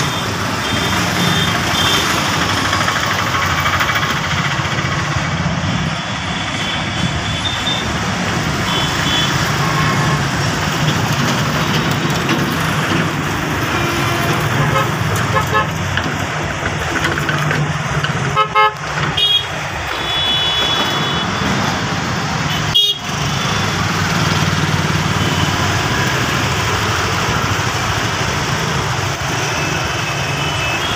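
Busy two-wheeler road traffic: motor scooter and motorcycle engines running under steady road and wind noise. Short high horn toots come a few times, near the start, around eight to ten seconds in and around twenty seconds in, and there is a sharp knock about 23 seconds in.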